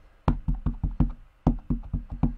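Plastic ink pad tapped repeatedly against a photopolymer stamp on a clear acrylic block to ink it: a quick run of light knocks, about five a second.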